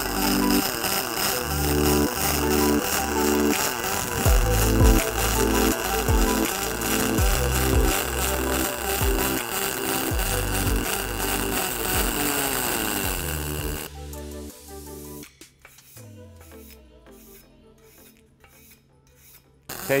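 Background music with a steady bass line laid over the steady hiss and crackle of a pulsed MIG arc welding aluminum. About fourteen seconds in, both fall away to a much quieter stretch with faint regular ticks.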